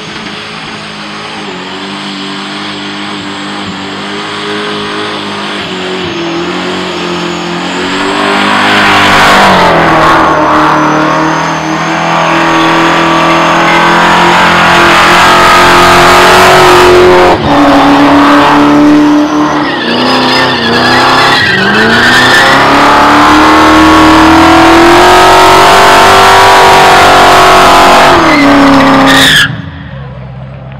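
A burnout car's engine held at high revs while its rear tyres spin and smoke on the pad. It gets louder over the first ten seconds, the revs drop and climb again a couple of times in the middle, and the engine cuts off suddenly near the end.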